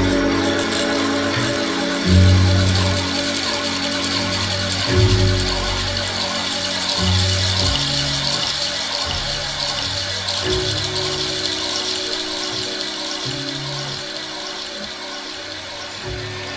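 Background music from a live band recording: sustained bass notes change every second or two over a steady hiss, slowly getting quieter.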